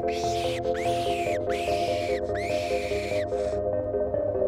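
Fox call squeaking out a series of high squeals to draw in a fox: four drawn-out squeals, each rising at its start and falling away at its end, then a short fifth. Background music with soft mallet-instrument notes plays under it.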